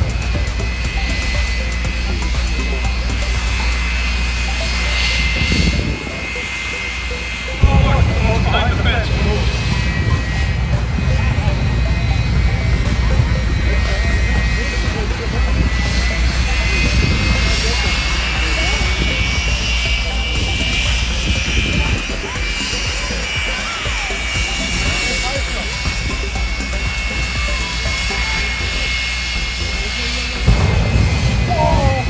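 Jet engine of a jet-powered truck running with a steady high turbine whine over a low rumble. The whine drifts slightly in pitch, and a sudden louder surge comes about eight seconds in.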